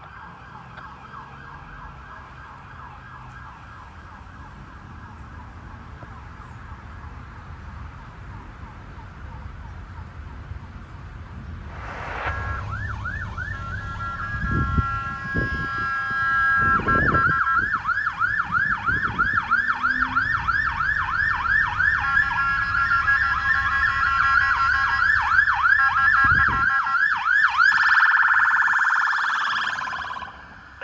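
Police car sirens approaching: first a fainter, rapidly warbling siren, then about twelve seconds in a much louder siren with fast repeating yelp sweeps that grows louder as the police cars near.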